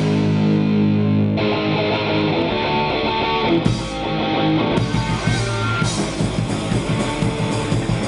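Hardcore punk band playing live in a rehearsal room: distorted electric guitars, bass guitar and drum kit. About a second in, long held chords ring with little top end, and the full band with its bright, hissy top comes back in about five seconds in.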